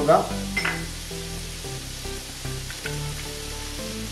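Sliced onions sizzling in hot oil in a wide aluminium pan, with background music of held notes over the frying.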